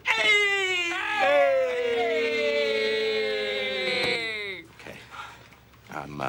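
Several men shouting a long, drawn-out "heyyy" together, the pitch sliding slowly down, breaking off about four and a half seconds in; fainter, broken vocal sounds follow.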